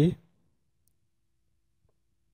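Near silence with two faint clicks from a cardboard box being handled and opened.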